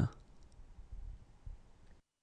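The end of a spoken word dies away. After that there is quiet room tone, with a few faint soft clicks around one second in and another about a second and a half in.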